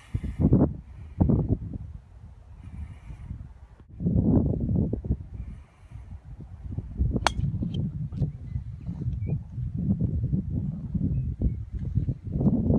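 Wind buffeting the microphone in gusts, with one sharp crack of a golf club striking a ball off the tee about seven seconds in.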